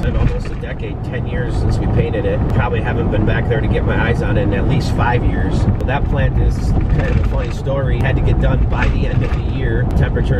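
Steady low road and engine rumble inside a Ford pickup's cab at highway speed, with a man talking over it.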